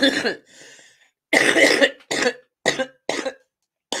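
A person coughing in a fit: a run of about six coughs, the later ones shorter.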